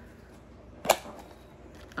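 A plastic toy egg's shell snapping open with one sharp click about a second in, amid faint handling noise.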